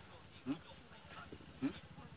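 Cattle giving two short, low calls, rising in pitch, about a second apart.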